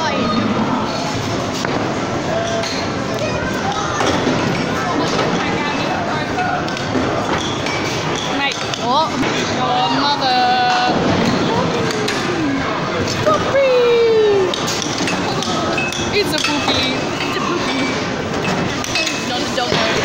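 Busy amusement-arcade din: overlapping background voices and arcade-machine music, with occasional clinks. A few sliding tones come about halfway through.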